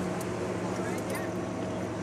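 An engine running steadily, a constant low hum, with faint voices in the background.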